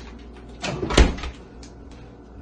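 Refrigerator door swinging shut, closing with a thump about a second in, just after a brief rattle.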